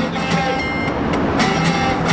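Acoustic guitar strummed in a steady rhythm, playing a country-rockabilly song, over a low rumble of traffic.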